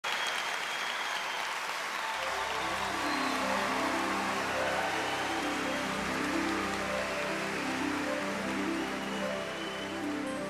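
Audience applause, with a concert orchestra entering about two seconds in on soft sustained chords while the applause dies away beneath it.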